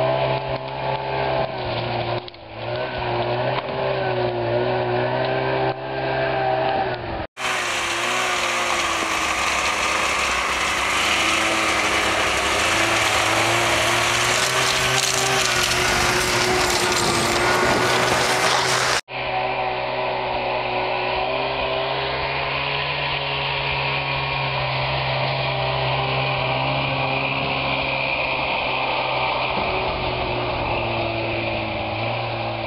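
Snowmobile engine running steadily under load, its pitch wavering a little. It cuts off and picks up again abruptly twice, about 7 and 19 seconds in.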